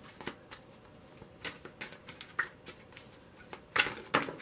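Tarot cards being shuffled and handled: a string of light, irregular card snaps and flicks, the loudest just before the end.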